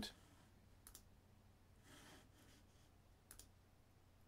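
Near silence, room tone with two faint computer mouse clicks, one about a second in and one just past three seconds.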